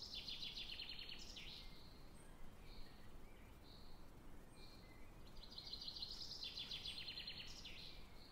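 Faint birdsong: a fast, high trill in the first second and a half and another like it from about five seconds in, with a few short chirps between, over a light hiss.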